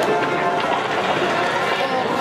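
Grandstand crowd at a harness-racing track: many voices talking and shouting over one another as the trotters pass, in a steady, loud mix.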